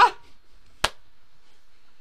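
A single sharp finger snap a little under a second in; otherwise quiet room tone.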